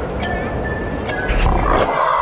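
Intro music and sound effects with a big-cat roar swelling in about halfway through, louder and deeper than what comes before.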